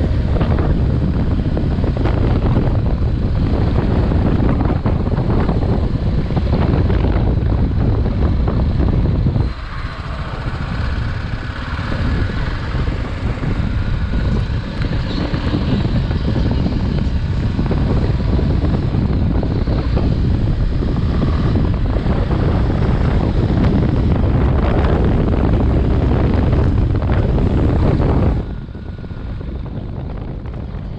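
Heavy wind buffeting on the microphone over motorcycle engine and tyre noise while riding at road speed. It eases for a while about ten seconds in and drops off near the end.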